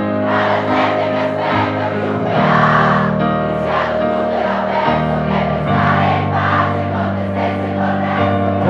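Live pop band music with held low chords that change every second or two, and a large crowd singing along in a mass of voices.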